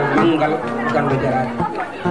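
Speech: a man's voice amplified through a handheld microphone, with other voices chattering around him.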